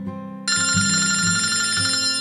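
A mobile phone ringtone sounds, breaking in suddenly about half a second in with a high, steady ringing. Under it, plucked acoustic guitar music plays.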